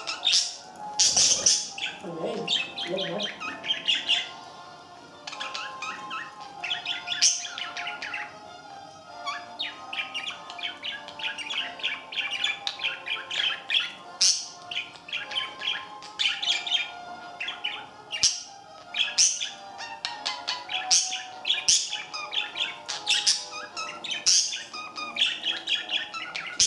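Budgerigars chattering: a continuous warble of fast chirps and clicks, broken by louder, sharper squawks every second or so.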